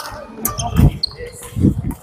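Badminton rally: sharp racket hits on the shuttlecock and two heavy thuds of players' footwork on the wooden court floor, about a second apart.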